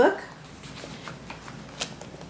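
Pages in plastic sheet protectors being turned in a ring binder: soft crinkling of plastic and paper, with a sharp click near the end.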